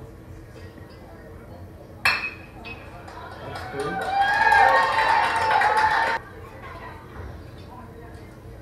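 A metal baseball bat pings sharply as it hits the ball, about two seconds in. Fans then cheer and yell loudly for a couple of seconds before the sound cuts off suddenly.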